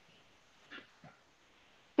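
Near silence on a video call, with two faint, brief sounds of unclear source about a third of a second apart around the middle. A man's voice starts at the very end.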